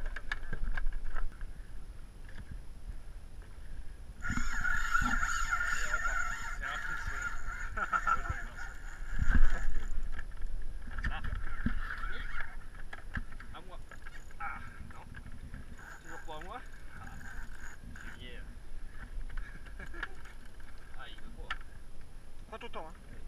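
A spinning reel's drag buzzing as a hooked bluefin tuna pulls line off it. The buzz is loudest for several seconds from about four seconds in, then weaker and in short spells. A loud knock comes about nine seconds in.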